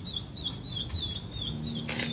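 A high, short chirp repeated steadily about four times a second: a small bird calling.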